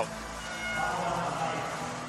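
Steady crowd hubbub from spectators at a swimming pool, swelling slightly in the middle.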